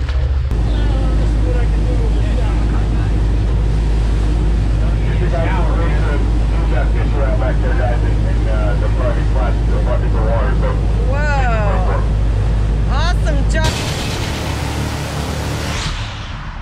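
A boat engine running with a steady low drone, with water rushing past the hull and indistinct voices of people on deck. Near the end the drone gives way to a steady hiss.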